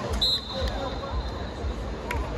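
Referee's whistle blown once: a sharp start a quarter second in, then a fainter held note for over a second, stopping play. Players' voices and the knock of the ball on the hard court run underneath.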